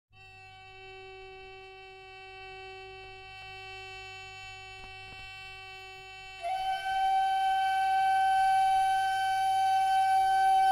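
A woodwind instrument intro in a medieval-style folk piece. A steady drone is held under a sustained high note. About six seconds in, a louder, breathy flute comes in holding one long note.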